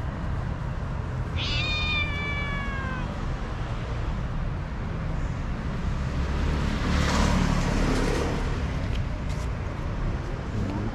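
A stray cat meows once for food, one long call that falls in pitch about a second and a half in. Street traffic rumbles underneath and swells as a vehicle passes around seven seconds in.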